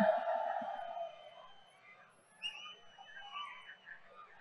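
The echo of a man's shouted voice over the rally loudspeakers dies away in the first second. After that there are only faint, distant crowd voices and a brief thin high call about halfway through.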